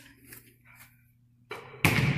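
A basketball coming down from a missed shot in a gym: a sharp knock off the hoop about a second and a half in. A third of a second later comes a louder bang as it lands on the hardwood floor, echoing in the large hall.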